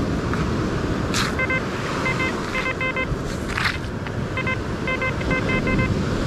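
XP Deus 2 metal detector sounding groups of short, steady-pitched beeps as its coil is swept back and forth over a buried target. The repeated, consistent tone is the solid non-iron target signal that reads around 61. Under it runs a steady wash of surf and wind.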